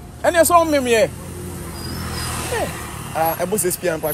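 A road vehicle passing, its noise swelling and fading away in the middle, between bursts of excited talk.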